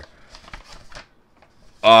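A folded sheet of paper being unfolded and handled, giving a few faint rustles and crinkles in the first second, then a man's brief "oh" near the end.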